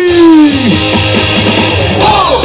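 A long held chanted note slides down in pitch and dies away within the first second. Then a rock-style baseball cheer song with electric guitar and bass plays loudly over the stadium loudspeakers.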